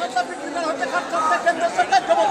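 Crowd of protest marchers, many voices talking and calling out over one another.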